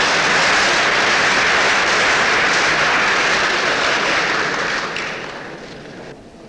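A large audience applauding, the clapping dying away near the end.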